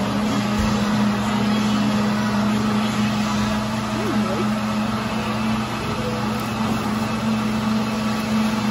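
A steady low machine hum with a constant drone, over a faint background haze.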